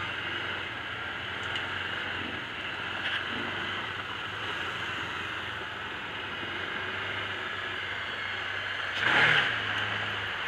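Can-Am Commander 800 side-by-side's Rotax V-twin engine running steadily at low speed, heard from the hood. A brief louder burst about nine seconds in.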